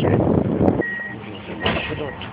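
Tram rolling in with loud running noise that cuts off abruptly under a second in. A quieter hum follows, with a steady high electronic beep sounding twice.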